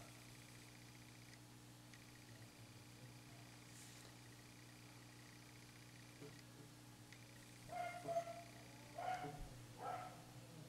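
Near silence: room tone with a steady low hum. A few brief, faint pitched sounds come near the end.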